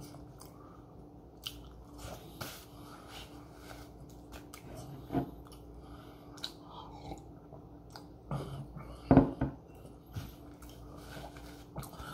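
Close-up mouth sounds of chewing a soft chocolate chip cookie, with small scattered clicks and a sip from a mug midway. A louder knock sounds about nine seconds in.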